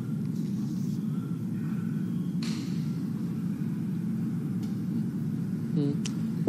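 Steady low background rumble on an open broadcast microphone, with a brief hiss about two and a half seconds in.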